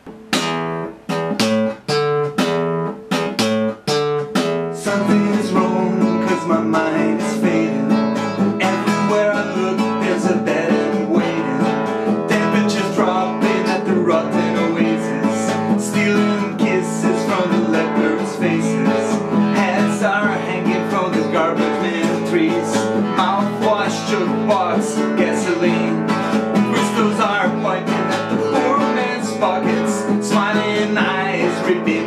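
Nylon-string classical guitar strummed in a rock rhythm. For the first few seconds it plays separate chopped chord stabs, then it settles into steady continuous strumming.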